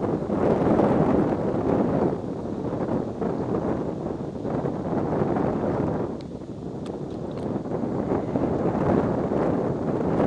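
Wind buffeting the microphone: a rushing rumble that swells and eases in gusts, dipping about two seconds in and again a little past halfway before rising again.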